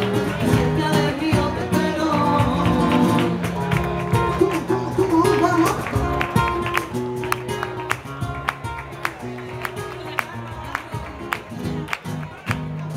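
Live band music played through a club PA and heard from the audience: a flamenco-flavoured song with guitar and a singing voice, and a steady percussion beat in the second half.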